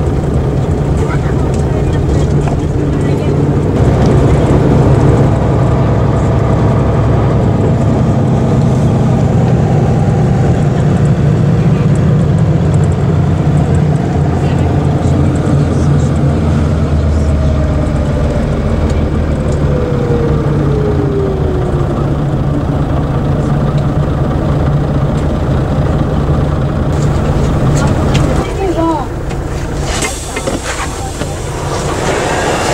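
Ikarus EAG E95 bus's diesel engine heard from inside the cabin, running steadily as the bus drives, with a falling whine about two-thirds of the way through. Near the end it drops to a quieter idle as the bus pulls up at a stop.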